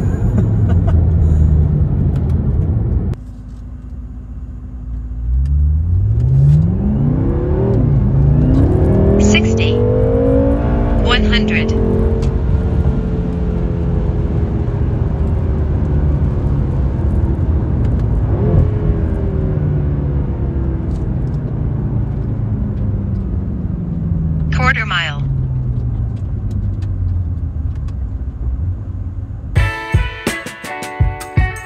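The BMW M6's 4.4-litre twin-turbo V8, heard from inside the cabin under full-throttle acceleration. Its note climbs steeply and drops at upshifts about 8 and 11 seconds in, then falls away slowly as the car slows. Before the run, a loud low engine drone cuts off suddenly about three seconds in.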